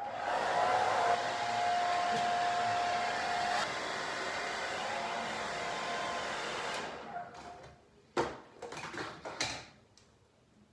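Handheld hair dryer blowing steadily with a thin whine, dropping a little in level about halfway through, then switching off about seven seconds in. A few short rustles and knocks follow.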